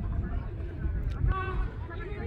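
Faint distant voices from the players and onlookers of an outdoor football match, a few brief calls heard a little after the middle, over a low uneven rumble on the microphone.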